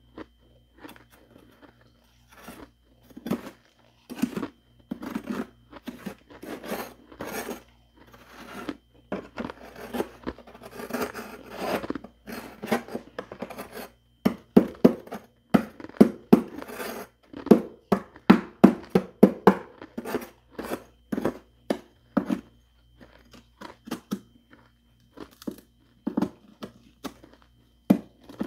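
Metal spoon scraping and gouging thick freezer frost: a long run of irregular crunchy scrapes, sparse at first, then coming thicker and louder through the middle.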